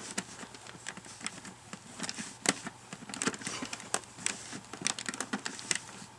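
A cloth towel wiping spray polish off a plastic helmet visor: soft rubbing with an irregular run of small clicks and scratches, several a second, as the cloth drags and the visor flexes.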